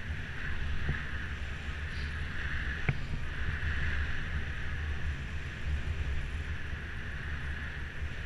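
Wind buffeting the microphone of a bicycle-mounted camera while riding, with a steady low rumble and hiss from the road and tyres. A single sharp click about three seconds in.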